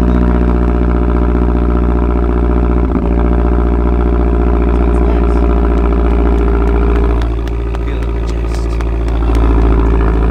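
Mazdaspeed 3's turbocharged 2.3-litre four-cylinder idling steadily, heard at the twin exhaust tips, with a brief knock about three seconds in.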